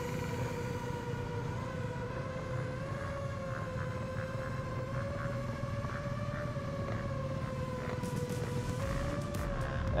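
X8 octocopter's eight motors and 7-inch three-blade props humming in flight: one steady tone that wavers slightly up and down in pitch over a low rumble.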